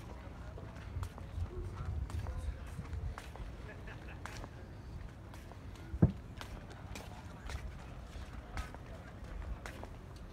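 Footsteps walking along a marina dock, about two a second, over low rumble on the phone's microphone. A single sharper knock comes about six seconds in.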